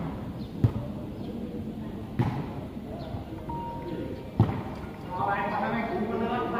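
A volleyball kicked three times by bare feet, each a sharp thud about one and a half to two seconds apart, over the chatter of a crowd of spectators.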